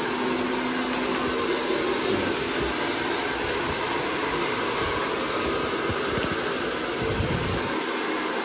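Handheld hair dryer running steadily, an even rush of air with a faint steady low hum, as it is blown over long hair.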